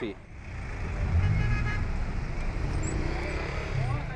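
Road traffic on a busy city street: a low rumble of vehicle engines swells about half a second in and then holds steady.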